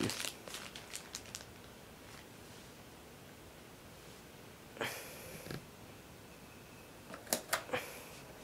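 Seville Classics 17-inch tower fan's squirrel-cage blower running very quiet, a faint steady whoosh of air. A brief rustle comes about five seconds in and a few sharp clicks near the end.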